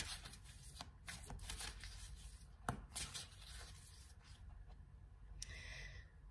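A deck of oracle cards being shuffled by hand: soft rustling with a few sharp snaps of the cards, busiest in the first three seconds and thinning out after about four.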